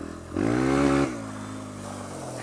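Sinnis Apache 125's single-cylinder four-stroke engine, through its aftermarket D.E.P exhaust, revs up briefly about half a second in, then drops back to a lower, steady note as the bike rolls on.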